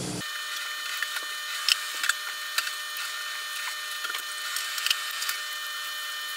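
Thin carbon-fibre frame plates and camera-mount pieces clicking and scraping against each other as they are handled and forced into tight slots: about a dozen sharp, irregular clicks over a thin hiss with faint steady high tones and no low end.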